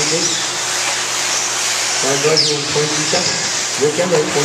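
Steady hiss of 1/8-scale electric RC off-road buggies running on an indoor dirt track, with a brief high falling whine a little past halfway. Voices talk over it in the second half.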